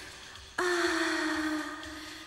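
A woman's sharp, breathy gasp about half a second in, drawn out into a long voiced moan that slowly sinks in pitch and fades.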